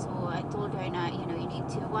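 Steady road and engine rumble inside the cabin of a car driving along, with a woman's voice speaking over it.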